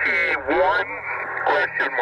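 Voice received over 2 m single-sideband, coming out of a Yaesu FT-857D transceiver's speaker: continuous radio speech with a thin, clipped-top sound over a steady low hum.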